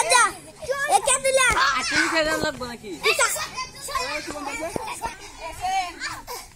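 A group of children's voices, several calling out and chattering at once during an outdoor game.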